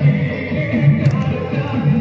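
Navratri garba music playing continuously, with a low line that slides up and down beneath held higher tones.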